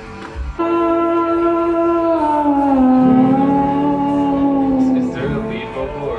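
One loud, sustained electric guitar note, held for several seconds. About two seconds in it slides down in pitch, as it would when detuned at the headstock, then holds at the lower pitch before fading. A low rumble joins under it about halfway through.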